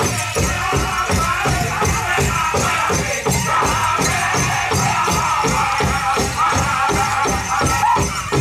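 Powwow drum group singing over a steady unison drumbeat, about three beats a second.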